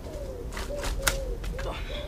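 A knife chopping through the stem of a hanging bottle gourd: a few sharp strikes, the loudest about a second in. A bird coos repeatedly in the background.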